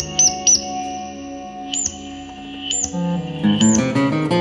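Improvised guitar music: held guitar notes through effects pedals, with short high chirping blips recurring over them. About three and a half seconds in, the playing turns busier, with quicker notes.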